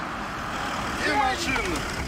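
Mercedes-Benz G-Class SUV driving off, with steady engine and road noise. A voice cuts in about a second in.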